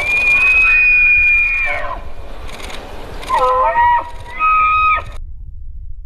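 Battery-operated toy markhor giving out pitched electronic calls: one long, flat, high tone lasting nearly two seconds, then two shorter, lower tones about three and four and a half seconds in. The sound cuts off suddenly about five seconds in.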